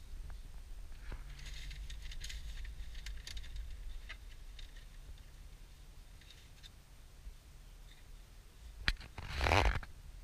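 Low rumble of a car moving slowly in traffic, heard inside the cabin, with faint scattered ticks and crackles. Near the end there is a sharp click, then a loud brief rustle that is the loudest sound here.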